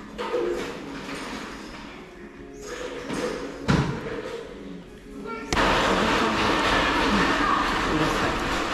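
Electric blender whirring steadily as a sinh tố (Vietnamese fruit smoothie) is made, starting suddenly about five and a half seconds in. Before it, café background with a single thud about halfway through.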